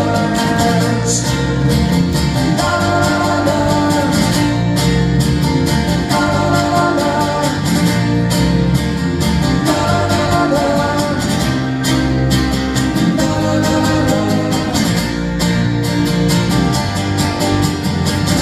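Acoustic band playing live: two strummed acoustic guitars over keyboard, with a melody line carried above them.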